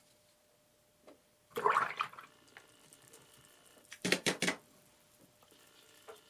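Paintbrush swished briefly in a jar of water, then a quick cluster of sharp taps and clinks about four seconds in, likely against the metal watercolour tin.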